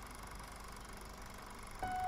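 Faint steady hiss, then near the end a steady electronic chime note starts and holds.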